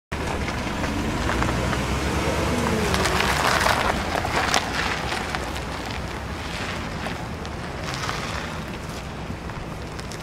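Chevrolet Tahoe SUV driving slowly past close by and pulling away: engine and tyre rumble loudest in the first few seconds, then fading, with wind buffeting the microphone.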